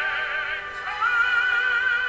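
Operatic singing: a voice holding long notes with wide vibrato, moving to a new, higher held note about a second in.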